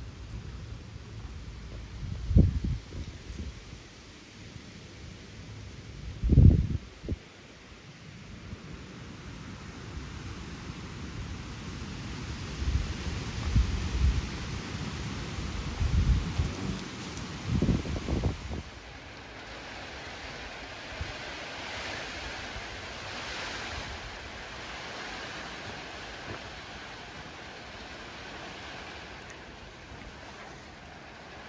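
Gusting wind buffeting the microphone in heavy low rumbling blasts, the loudest about two and a half and six and a half seconds in and a cluster from about thirteen to eighteen seconds. After that it settles into a steady, fainter hiss.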